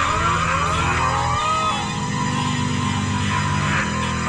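Live rock jam music: an electric guitar plays repeated rising slides over sustained low bass notes, and the bass shifts pitch about a second and a half in.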